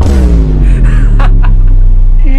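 A very loud, heavily bass-boosted edited-in sound effect: a deep sustained bass boom, with a tone sliding down in pitch over the first second.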